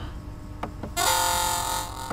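Two short clicks, then a Windows system alert chime sounds for about a second as a warning dialog pops up.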